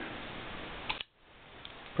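Titanium frame-lock folding knife opened by hand: the manual flipper deployment snaps the blade out and locks it, heard as a quick pair of sharp clicks about a second in.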